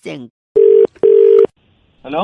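Telephone ringback tone heard down the phone line: one double ring, two short bursts of a steady low tone with a brief gap, as the called phone rings before it is answered.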